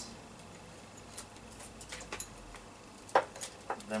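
A few faint clicks and light knocks of small items being handled on a workbench, with the sharpest knock about three seconds in.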